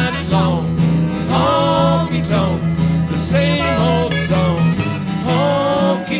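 Live honky-tonk country music: two acoustic guitars and a lap steel guitar, with voices singing the chorus.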